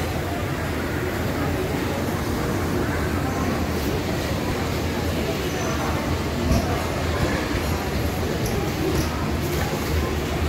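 Steady din of a busy Indian railway station, with indistinct voices of people nearby.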